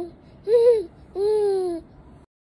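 Infant shouting in loud, drawn-out vowel calls: a short rising-and-falling one about half a second in, then a longer one that slowly drops in pitch.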